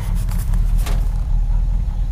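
Old Chevy dump truck engine running steadily, heard from inside the cab, with a couple of short clicks or rattles soon after the start and again just before a second in.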